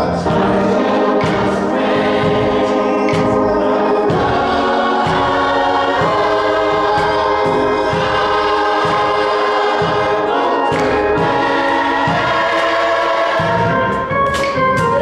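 Church gospel choir singing with keyboard accompaniment, sharp beats marking the rhythm.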